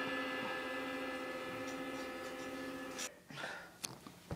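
A struck piece of a drum kit ringing out with a steady pitched tone and overtones, fading slowly, then cut off abruptly about three seconds in.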